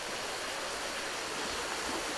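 Steady rush of a mountain stream: an even hiss with no distinct events.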